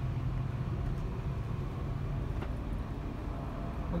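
Tour bus heard from inside, moving: a steady low engine hum with road noise.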